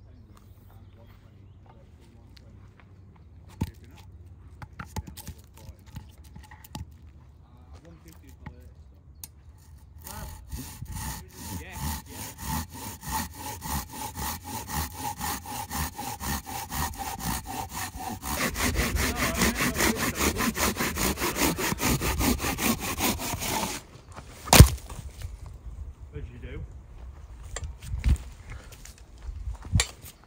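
Long-bladed hand pruning saw cutting through a log in rapid, even back-and-forth strokes. The strokes start about a third of the way in, grow louder midway and stop, followed at once by a single sharp wooden knock.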